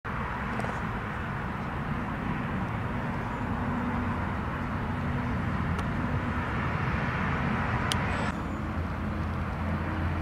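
Steady outdoor background noise: a low rumble like distant road traffic under an even hiss, with a couple of faint clicks. The hiss drops suddenly a little before the end.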